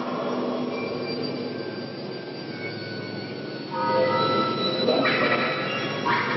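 Stage revue soundtrack: several sustained high tones over a steady hiss, swelling louder about four seconds in.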